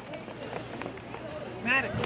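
Crowd chattering, many voices overlapping without clear words, with one high-pitched voice standing out briefly near the end.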